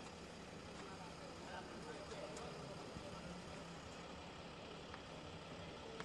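Faint, steady city street ambience: a low traffic hum with faint distant voices.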